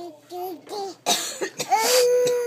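Toddler babbling short repeated syllables, like 'da da', in a high child's voice, then a short noisy burst of breath about a second in and one long held vocal note near the end.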